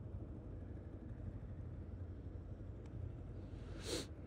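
Yamaha Ténéré 250's single-cylinder engine idling with the bike stopped, a steady low rumble heard muffled. A brief hiss comes near the end.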